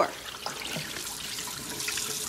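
Kitchen faucet running steadily into a plastic bowl of raw chicken pieces in a stainless steel sink, with light splashing as the pieces are rinsed by hand.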